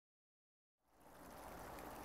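Faint splashing and trickling of washing-machine grey water pouring from a drain hose into a flooded dirt basin, starting after silence a little under a second in.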